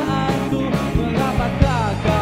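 Live rock band playing: a male lead singer sings over electric guitars, bass guitar and drums with a steady beat.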